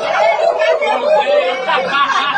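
High-pitched voices babbling and chattering over one another without clear words, with a laughing, snickering quality.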